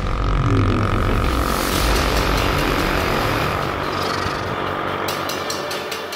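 Road vehicle passing on an asphalt road: a steady engine drone with tyre noise that slowly fades away.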